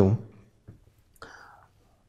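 A man's speaking voice trails off, followed by a pause with a faint tick and a short soft breathy sound about a second in.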